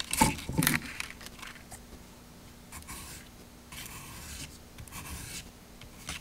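Sandpaper on a sanding block scraping across the tip of a wooden dowel, bevelling the tip. A few quick, louder strokes in the first second, then three longer, quieter strokes about a second apart.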